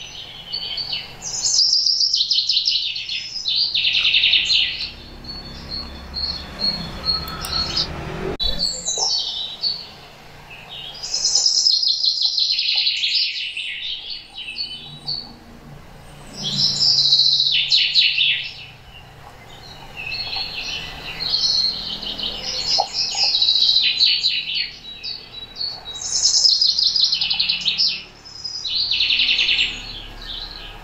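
Rose-ringed parakeet (Indian ringneck) giving loud, harsh screeching calls in bursts of a second or two, repeated every few seconds.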